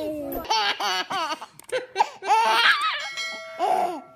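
A baby laughing in a string of short, high-pitched bursts.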